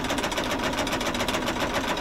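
An exercise machine running steadily, with a fast, even mechanical whir.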